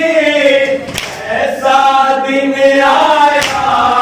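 A group of men chanting an Urdu noha, a Shia lament, in chorus with long, drawn-out lines. Twice, a sharp slap cuts through, about a second in and near the end, fitting hands striking chests in matam.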